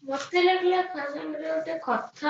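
A high voice singing long held notes, heard as background noise from a participant's unmuted microphone on a video call.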